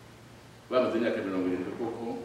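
A man's voice speaking in a sermon, starting after a short pause near the beginning.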